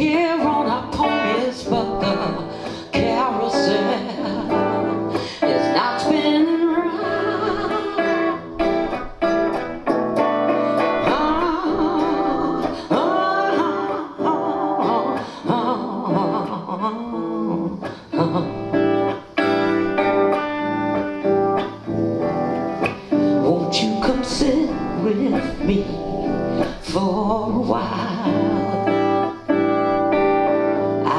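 A woman singing a slow song to her own electric guitar accompaniment, the guitar strummed and picked under her voice.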